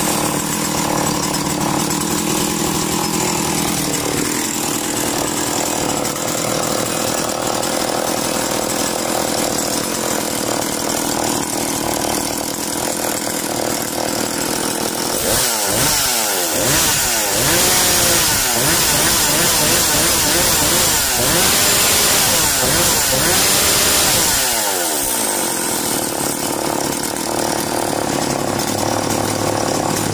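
Husqvarna 340e two-stroke chainsaw engine running at idle, then revved up to high speed about halfway through and held there for about eight seconds before dropping back to idle.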